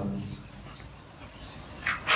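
A pause in a man's talk into a microphone: faint room tone, then a quick breath just before he speaks again near the end.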